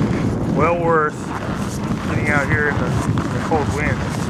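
Strong wind buffeting the microphone in a steady low rumble, with a person's voice breaking through in three short snatches.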